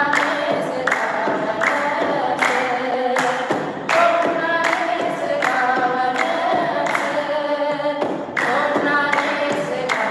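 An Ethiopian Orthodox mezmur, a hymn to the Virgin Mary, sung by a woman into a microphone without instruments. A sharp, regular beat falls about every three-quarters of a second under the singing.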